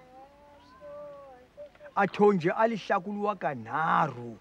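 An elderly man speaking in an African language, loud from about two seconds in. Before that comes a faint, wavering drawn-out tone.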